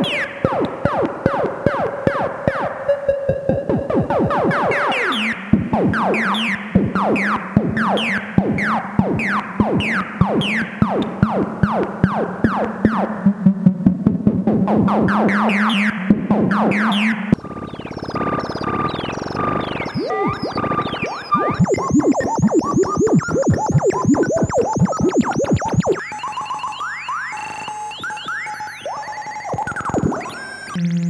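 1970s Practical Electronics (PE) DIY modular synthesizer making space sounds: quick repeated falling pitch sweeps over a steady drone, which drops to a lower pitch about five seconds in. About halfway through the patch changes to a busier texture of beeping, pulsing tones, rising sweeps and high whistles, and it shifts again near the end.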